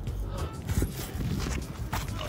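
Scuffs and scrapes of a dog's paws and footsteps on sandstone rock as they clamber up it, with wind rumbling on the microphone.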